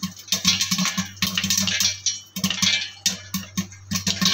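Background music with guitar, its strokes coming in a quick uneven rhythm.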